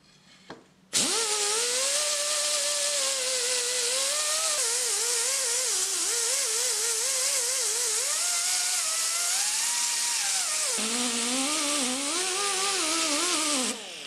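Air-powered die grinder with a sanding disc grinding small steel parts: a loud hiss with a whine that wavers up and down in pitch as it runs. It starts about a second in and winds down just before the end.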